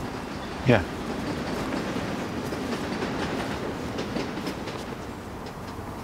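A steady, even rushing noise with faint scattered ticks running under a pause in the dialogue.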